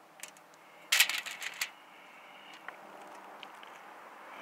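A short burst of crinkling crackles about a second in, from the aluminium foil being pressed and shifted under the food, with a few faint clicks before and after it.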